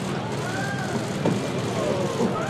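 Steady outdoor street and crowd noise, with faint, indistinct voices in the background.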